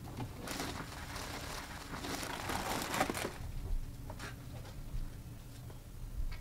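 Cellophane wrapping on a bouquet of roses crinkling as the bouquet is handled and set into a plastic bucket, lasting about three seconds, followed by a couple of light knocks.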